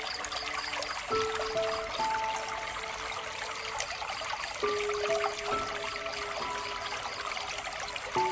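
Water trickling steadily from a bamboo water fountain under soft background music, a slow melody of held notes with new notes coming in about a second in and again midway.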